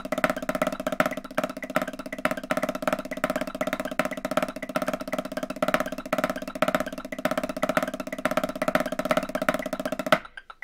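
Snare drum played with wooden sticks in fast, even double strokes, with accents picking out a syncopated rhythm over the roll. The playing stops abruptly at the very end.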